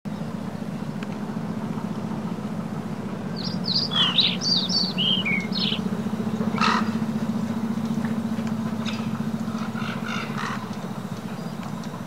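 A run of short, high, falling bird-like chirps about three to six seconds in, with single calls later, over a steady low hum.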